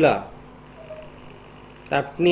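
Speech: a single drawn-out word with a falling pitch, then a pause with only a faint steady background hum.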